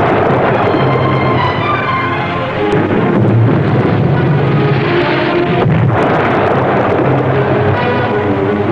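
Depth charges exploding close by in a run of booming blasts, mixed with loud dramatic film music.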